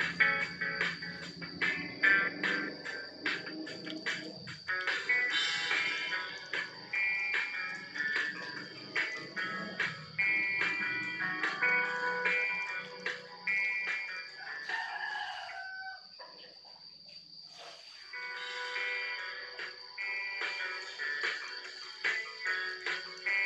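Music played from a phone through a small TDA7056 amplifier board and its bare loudspeaker, with a steady beat and a thin high whine running under it. It drops quieter for about two seconds past the middle, then comes back up.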